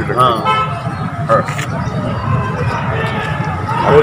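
Steady low rumble of street traffic, with scattered voices of men nearby.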